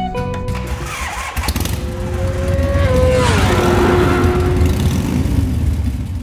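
Kawasaki Vulcan S's 650 cc parallel-twin engine running as the motorcycle rides by, a steady rumble whose pitch drops about three seconds in. The last notes of guitar music ring out in the first second.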